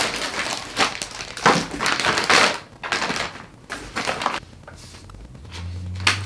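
Packing material in a cardboard box rustling and crinkling as it is pulled out by hand, in a run of bursts that die down after about four seconds.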